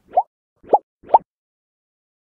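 Three short cartoon 'bloop' pop sound effects for an animated transition graphic, each a quick upward pitch sweep, about half a second apart.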